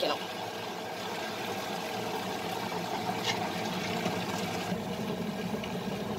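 Stone wet grinder running steadily, its stone roller turning in the drum and grinding soaked urad dal into idli batter.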